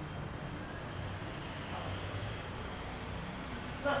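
Steady low room hum with a faint even background noise, unchanging throughout.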